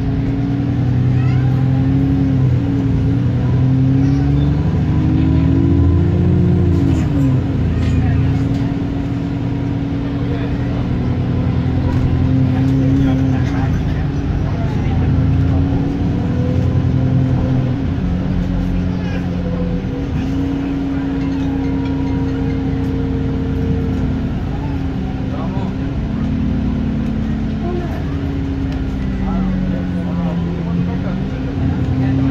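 Dennis E40D-chassised Alexander Enviro 400 double-decker bus heard from inside the passenger saloon: its diesel engine runs under way, its note rising and then dropping sharply about six seconds in as the automatic gearbox changes up, then running on steadily. Passengers talk in the background.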